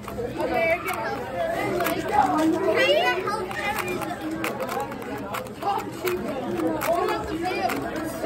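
Background chatter of several voices, with quick scattered clicks of a 2x2 speed cube being turned by hand.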